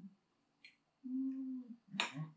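A person's closed-mouth 'mmm' of enjoyment while tasting food: one steady hum held for under a second, just after a short click about halfway in.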